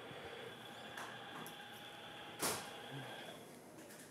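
Quiet room noise of a cardiac catheterization lab: a faint steady high whine from equipment, a couple of light clicks, and one short sharp burst of noise about two and a half seconds in.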